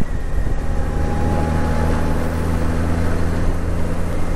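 Honda Gold Wing GL1800 flat-six engine running at a steady, even note while riding, under a constant rush of wind and road noise.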